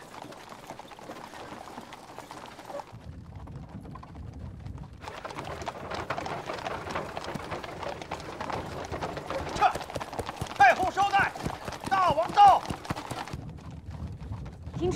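Horses' hooves clip-clopping on stone paving as a mounted escort and carriage move. There are several loud rising-and-falling calls over them near the end.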